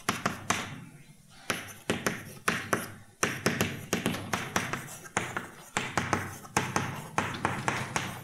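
Chalk on a blackboard: irregular, sharp taps and scratches, several a second, as formulas are written out by hand, with a short lull about a second in.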